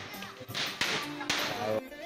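A few short, sharp cracks, irregularly spaced, over a faint background of music.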